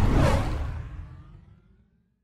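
A whoosh sound effect over a low rumble, fading out over about a second and a half.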